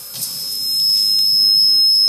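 A single steady high-pitched electronic tone holding one pitch and growing louder, over a faint hiss.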